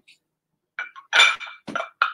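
Glass ashtrays clinking against each other and the tabletop as they are picked up and set aside: a few short, ringing knocks starting just under a second in, the loudest about halfway through.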